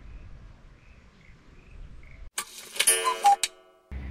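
Faint outdoor background, then, about two and a half seconds in, an edited-in clock sound effect: a quick run of ticks with a ringing chime lasting about a second, cut off abruptly. Guitar music starts at the very end.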